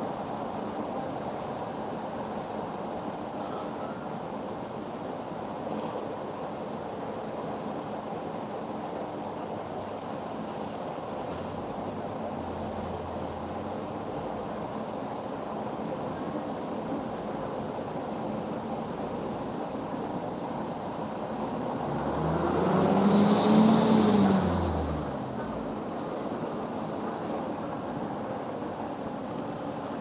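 Steady background hum of traffic and room noise. About three-quarters of the way through, a road vehicle passes by: its engine note swells, rising and then falling over about three seconds.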